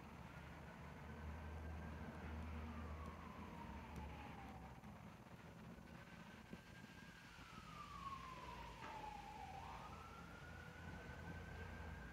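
Faint distant siren wailing, its pitch sliding slowly up and down in long sweeps, three times over, with a low rumble underneath.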